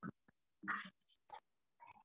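A person's voice speaking very softly in short, broken-up bursts, near a whisper, with silence between the syllables.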